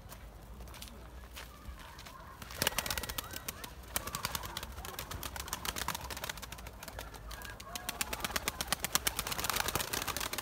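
Domestic pigeons on the ground cooing, with a dense, irregular run of short clicks and wing flutters starting about two and a half seconds in.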